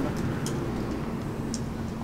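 Steady low background rumble of distant vehicles with a faint even hum.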